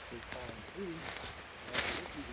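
Faint talking from a distant voice, then two brief rustling crackles about a second apart, like steps through dry leaves and twigs on a forest floor.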